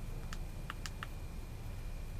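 Four small clicks in quick succession, from the buttons of a rechargeable hand warmer and power bank being pressed to switch off its vibration and flashlight functions. A steady low hum runs underneath.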